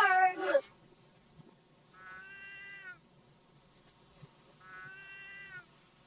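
Cat meowing, played backwards: a loud, short call with sliding pitch at the start, then two longer, steadier meows of about a second each.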